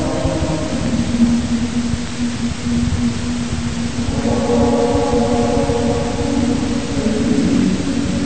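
Choir chanting in long held notes: a low sustained drone, with higher voices entering about halfway through, over a steady background hiss.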